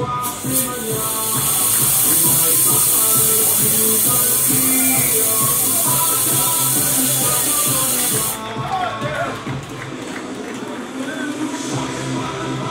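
Stage CO2 jets firing a loud, steady hiss for about eight seconds, then cutting off suddenly, over walkout music.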